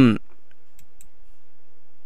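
A few faint computer mouse clicks in the first second, selecting a chart on screen, over a faint steady hum.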